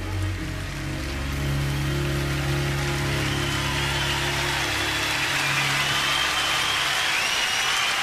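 The band's last sustained chord dies away under audience applause, with a few whistles from the crowd coming in partway through.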